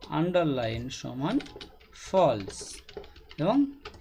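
Keys being typed on a computer keyboard while code is entered, with a voice speaking in short phrases over the typing.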